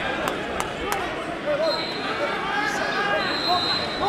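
Voices and chatter in a large, echoing hall, with three sharp knocks in the first second and a thin, steady high tone later.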